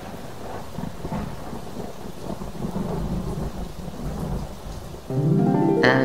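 Steady rain falling with a low thunder rumble underneath. About five seconds in, music comes in over the rain.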